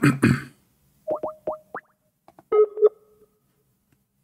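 Skype call being placed: four quick rising electronic blips, then a short two-tone chime.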